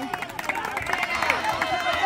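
Footsteps and shoe scuffs of players jogging on artificial turf, a run of short sharp ticks, under faint background voices.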